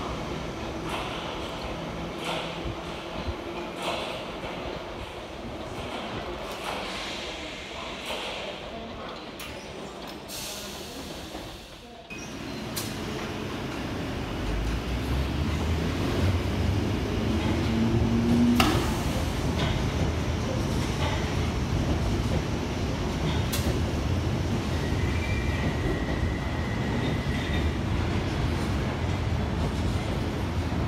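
London Underground 1972 tube stock trains: first one running at a distance, then a close train whose low rumble builds about halfway through and stays loud as it moves along the platform. A single sharp knock comes about two-thirds of the way in.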